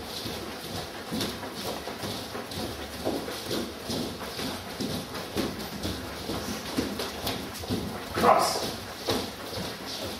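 Many people's footsteps on a wooden floor, an overlapping, irregular patter of shoe strikes as a group walks around the room. One louder short sound stands out about eight seconds in.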